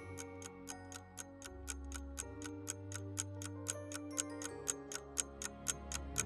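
Clock-like countdown ticking at about four ticks a second over held background music notes, timing the guessing pause in a quiz.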